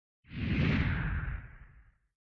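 Whoosh sound effect of an animated logo intro, with a deep rumble underneath. It swells in about a quarter second in and fades away over the next second or so.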